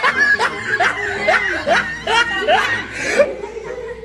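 Laughter: a quick string of short rising 'ha' sounds, repeated about three times a second.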